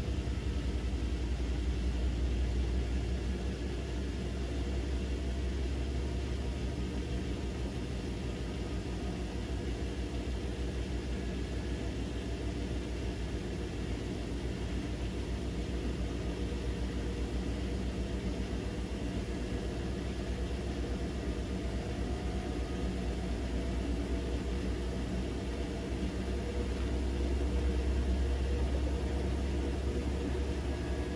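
Bosch front-loading washing machine running its wool cycle: the drum turning with a steady low motor hum and rumble, swelling slightly near the end.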